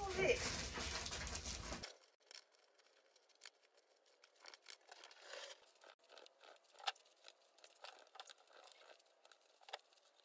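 For about two seconds a loud rush of outdoor noise with a brief sliding vocal sound, then an abrupt cut to quiet. After that, faint scattered crunches and clicks of footsteps on gravel and yard debris being handled.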